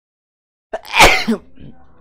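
A man sneezes once, loudly, about a second in: a short build-up, then a sharp burst that tails off.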